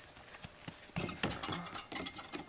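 Running footsteps on gravelly ground, faint at first, then from about a second in a quick series of loud footfalls and scuffs as the runner reaches and clambers onto a plastic playground slide.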